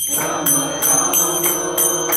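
Small hand cymbals (karatalas) struck in a steady rhythm, about three bright ringing strokes a second, over devotional kirtan chanting.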